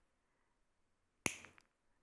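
A single sharp snip a little over a second in, with a brief ring-off: side cutters cutting through nylon-coated steel beading wire. Otherwise near silence.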